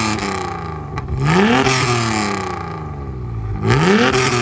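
Car engine revving: the pitch climbs sharply about a second in, falls slowly away, and climbs sharply again near the end.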